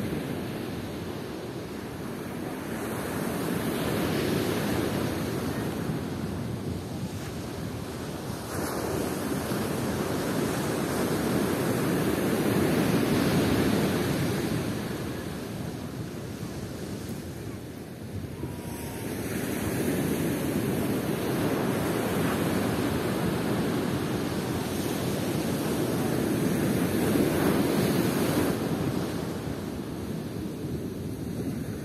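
Ocean surf breaking and washing up a sandy beach. It comes in slow surges that swell and fade about every seven or eight seconds.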